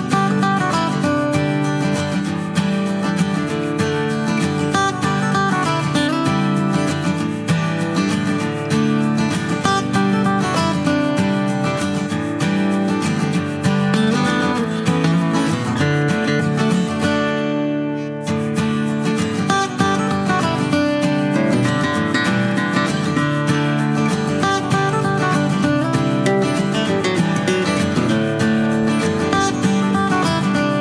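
Background music led by a strummed acoustic guitar, playing steadily throughout.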